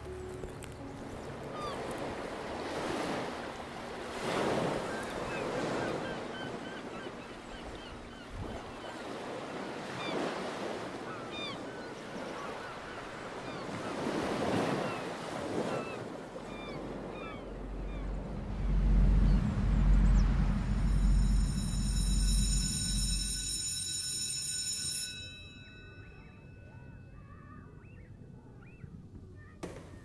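Sea waves washing in, rising and falling in swells every few seconds, with small bird calls over them. In the second half a loud low rumble and a high, steady ringing tone come in together and cut off suddenly about 25 seconds in, leaving quieter surf.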